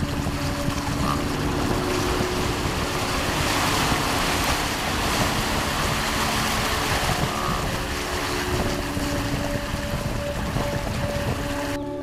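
Water rushing and splashing along the hull and wake of a small wooden electric boat under way at speed, with wind buffeting the microphone. The electric drive itself is near silent, so water and wind make up almost all of the sound.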